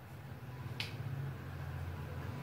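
A whiteboard marker's cap pulled off with a single sharp click a little under a second in, over a steady low hum.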